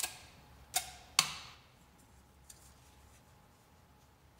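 Three sharp snaps of paper and tape being handled in the first second and a half, the last two loudest and each trailing off briefly, then only faint handling.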